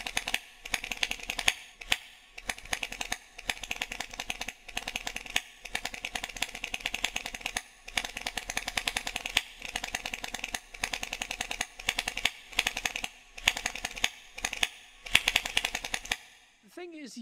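Typing sound effect: rapid key clicks in runs, broken by short pauses.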